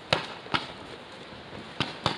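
Three sharp, irregularly spaced pops of paintball markers firing, the first the loudest, over a faint steady hiss of outdoor background.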